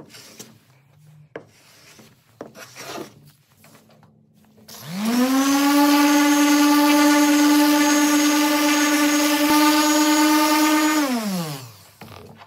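A corded electric random orbital sander spins up about five seconds in, runs at a steady pitch while sanding a glued-up wooden board panel, then winds down near the end. Before it starts there are only faint knocks and rubbing.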